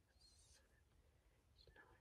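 Near silence: faint whispering under the breath, as when silently counting, with a couple of brief soft hisses.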